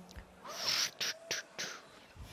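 Beatboxer's vocal percussion in a gap between held brass-like tones: four short, sharp hissing sounds, the first about half a second in and longest, then three quicker ones, with faint short whistled pitch glides among them.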